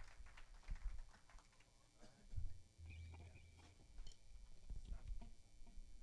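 A quiet pause between songs, with faint scattered knocks and clicks of instruments and gear being handled on stage, and a short low hum about three seconds in.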